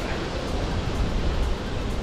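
Steady wind rushing over the microphone of a camera riding along on a moving bicycle, a noisy hiss with a heavy low rumble.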